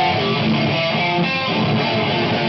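Live rock band: electric guitars playing a passage of distinct ringing notes, with little bass or drum beat under them.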